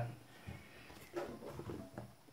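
Quiet room with a few faint handling sounds from a tablet and its keyboard dock: light clicks and a soft rub as the docked tablet is held.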